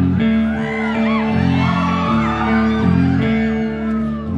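Guitar playing sustained chords, with whoops and cheers from the audience rising over it in the middle.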